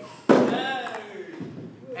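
A man's loud drawn-out shout, falling in pitch, starting about a quarter second in, with a few light clicks of a table-tennis ball in play.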